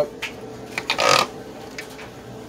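Handling noise from a plastic headlight bucket being moved about on the workbench: a few light knocks, then a short scrape about a second in.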